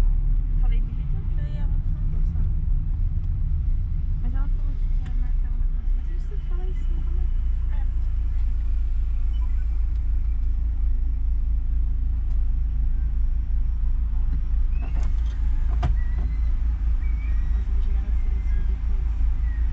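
Steady low rumble of a car's engine and road noise heard inside the cabin, as the car drives through city traffic and then waits at a crosswalk. Two short sharp clicks about a second apart come near the end.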